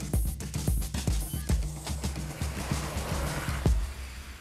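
Background music: an electronic track with a steady drum beat over a bass line.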